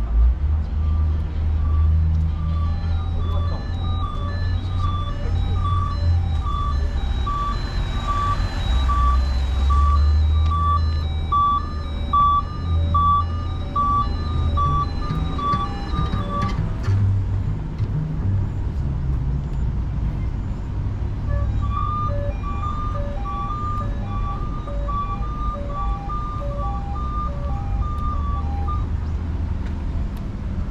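A simple electronic melody of short beeping notes, about two a second. It stops about halfway through and starts again a few seconds later, over a steady low rumble of traffic and wind.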